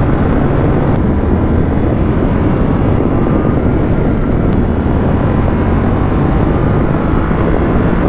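Yamaha Ténéré 700 World Raid's 689 cc CP2 crossplane parallel-twin running steadily under way at road speed, heard from the bike with road and wind noise. The engine note holds even throughout, with no gear change or sharp revving.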